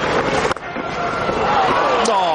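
Stadium crowd noise from a cricket broadcast, broken by a single sharp crack about half a second in, after which the crowd sound briefly drops away.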